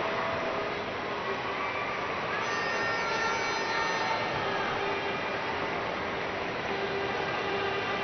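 Steady noise of a large stadium crowd, with a few faint pitched calls or horn tones rising out of it about two to four seconds in.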